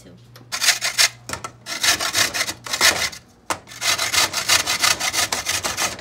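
Rapid rasping strokes of food being grated on a metal box grater, in three runs with short breaks between them.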